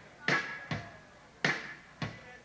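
Live rock band's drum kit striking three sharp, sparse hits in the first second and a half, each with a short ring-out, in a stop-time break.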